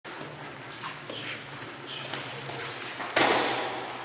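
Kickboxing sparring: light footwork and small knocks, then about three seconds in a loud blow lands with a sharp smack that echoes briefly in the hall.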